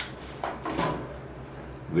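A short rustle of the clear plastic anaesthetic container being handled, over a low steady hum.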